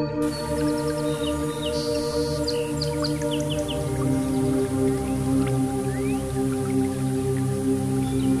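New-age ambient music: sustained synthesizer pad chords, the chord shifting about halfway through, with short high birdsong chirps mixed in over the first half.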